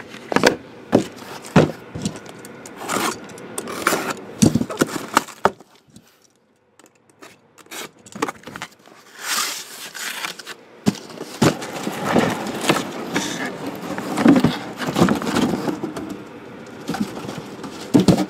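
Cardboard shipping case being handled and unpacked: knocks, scrapes and rustling as shrink-wrapped boxes are slid out and set down. A brief lull comes about six seconds in, then denser scraping and rustling.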